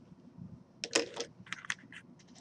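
A few light, irregular clicks and taps, clustered about a second in and again near a second and a half.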